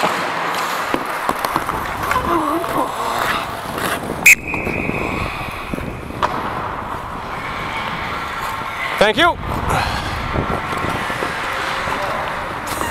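Ice hockey game in an indoor rink: skates scraping and cutting the ice, with sticks and pucks clicking. A sharp crack comes about four seconds in, followed by a ringing tone that lasts over a second. A player shouts briefly around nine seconds.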